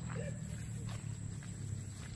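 Wind buffeting the microphone as a steady low rumble, with a short bit of voice near the start and faint footsteps through grass.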